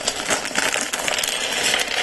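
Small plastic LEGO pieces spilling out of a torn-open polybag and clattering onto a tabletop in a dense run of small clicks.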